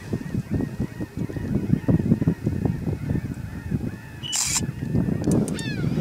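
Wind buffeting the microphone on an open boat, under a steady run of short, faint calls like birds honking. A brief hiss about four and a half seconds in.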